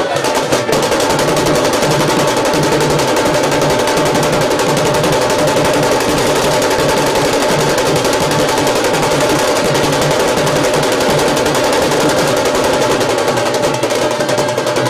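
Street band drums, bass drums and side drums, playing a fast, dense, unbroken beat.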